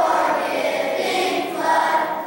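Children's choir singing together in sustained notes.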